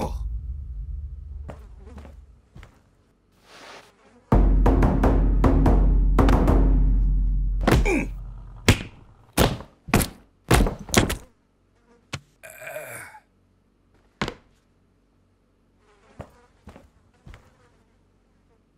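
Film sound effects for a stop-motion fight's aftermath: two deep booming hits that die away slowly, then a quick run of five sharp thuds. About two-thirds of the way in comes a short insect-like buzz.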